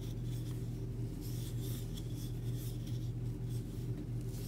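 Yarn sliding and rubbing on a wooden crochet hook as single crochet stitches are worked, a faint scratchy rustle in short irregular strokes. A steady low hum runs underneath.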